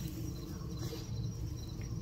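Insects trilling steadily in high, thin tones over a low, steady rumble.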